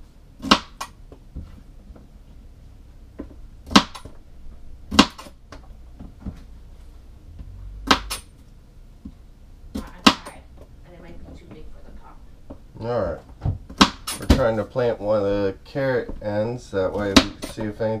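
A kitchen knife chopping celery on a cutting board: single sharp cuts a few seconds apart, coming quicker in the last few seconds as a voice starts talking.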